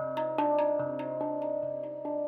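Steel handpan played by hand: a quick flow of struck notes, several a second, each ringing on into the next, with a low bass note struck about every second.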